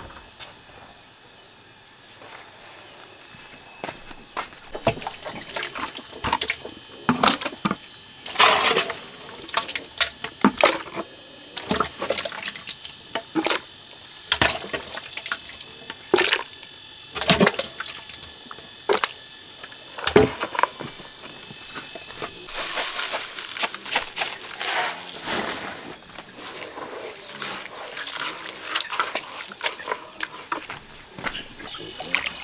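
A long-handled scoop ladling wet cooked animal-feed mash from a large metal pot into a plastic bucket, knocking and scraping against the pot and bucket at irregular intervals, with wet slopping of the mash.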